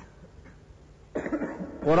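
A man coughs once, a short sharp burst about a second in during a pause in his speech.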